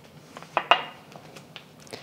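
A few light clinks and taps as a metal teaspoon and a small glass spice jar are set down on a wooden countertop, one clink ringing briefly about two-thirds of a second in.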